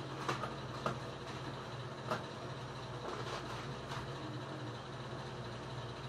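A steady low appliance hum, with a few soft scrapes and knocks of an ice cream scoop digging into a tub and against a stainless steel milkshake cup.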